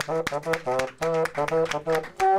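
Bassoon playing a jaunty walk-on tune in short, detached notes, about four or five notes a second.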